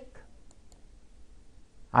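Quiet room tone with two faint short clicks about half a second in, a quarter second apart.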